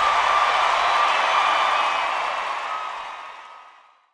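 Arena crowd cheering and applauding just after a rock song's final hit, with a faint held tone ringing over it; it fades out to silence near the end.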